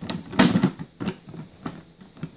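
Hard plastic storage box lid being handled and shut: a few plastic knocks and clicks, the loudest about half a second in.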